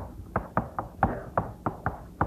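Chalk striking and stroking a chalkboard as block capital letters are written: a quick, irregular series of sharp taps, about six a second.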